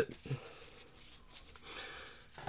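Faint rustle and slide of paper trading cards as a hand gathers them into a stack.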